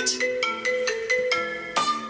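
A phone ringtone playing: a quick melody of short, bright marimba-like notes, several a second.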